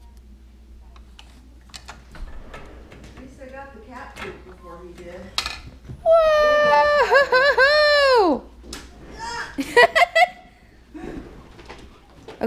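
A high-pitched vocal call held for about two seconds, wavering and then sliding down in pitch at the end, followed by a few short sharp cries. Light clicks and rustling come before it.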